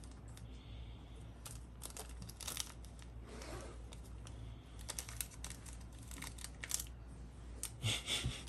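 Faint crinkling and crackling of a Reese's candy wrapper being handled by small hands, in scattered short bursts.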